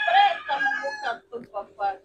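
A rooster crowing once, a long drawn-out call that ends about a second in, followed by a few short spoken syllables.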